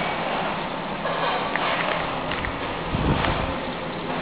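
Kroll KK30 wood-and-oil combination boiler running, giving off a steady rushing noise. A brief low rumble comes about three seconds in.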